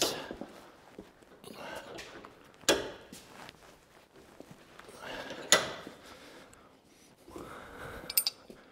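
Pipe wrench being heaved on the corrosion-seized threaded part of a torch-heated 10-ton bottle jack held in a bench vise: two sharp metal clunks a few seconds apart, with softer scraping and shuffling between them.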